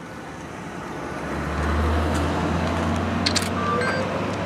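Police patrol car's engine rumbling as it pulls away, swelling about a second in and holding steady.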